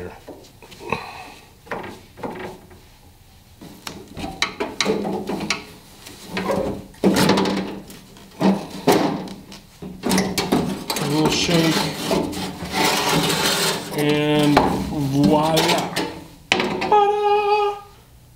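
Screwdriver and metal door parts of an Early Ford Bronco being worked to remove the wing window: irregular clinks, knocks and scraping of metal on metal. There is a longer stretch of rubbing and scraping through the middle.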